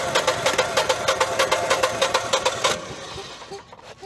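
Generac standby generator's twin-cylinder OHV engine cranked over by its starter with the fuel shut off, turning over in an even, fast rhythm without firing, then stopping about two and a half seconds in. It is being cranked to test for ignition spark at a plug lead fitted with an inline spark tester.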